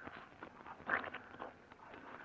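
Faint, irregular footstep and scuffing sound effects in an old-time radio drama.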